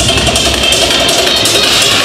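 Loud techno played through a club sound system. The kick drum and bass drop out at the start, leaving fast high percussion and a synth line: a breakdown in the track.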